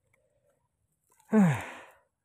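A person's voice giving one short, breathy sigh that falls in pitch, about a second and a third in.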